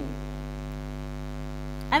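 Steady electrical mains hum with a stack of overtones, carried through the microphone and sound system during a pause in speech; a woman's voice comes in right at the end.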